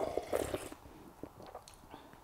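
A person sipping sparkling tea from a wine glass: a short soft slurp in the first half second, then a few faint mouth clicks.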